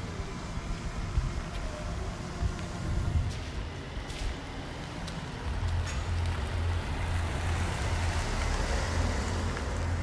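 A car driving slowly closer, its engine rumble and tyre noise getting louder from about halfway through.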